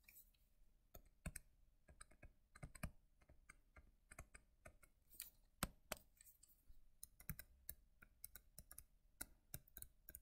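Faint, irregular clicks and taps of a stylus tip on a tablet screen while handwriting, several a second.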